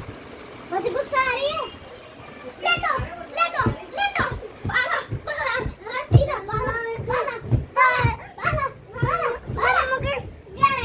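Two young boys shouting and squealing in rough play, their high, excited voices rising and falling in quick bursts through most of the stretch.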